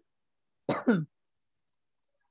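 A person clearing their throat once, a short rough vocal sound that falls in pitch, about a second in.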